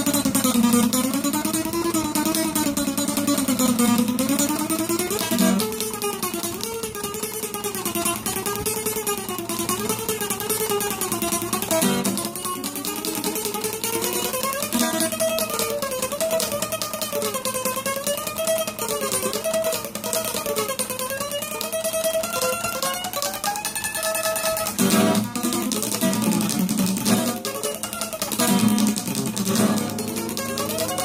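Acoustic guitar played with a pick: a melody picked in fast tremolo, rapid repeated strokes on the strings, with a few strummed chords near the end.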